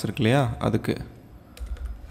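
A few clicks of computer keyboard keys being typed on, coming after a brief spoken word at the start.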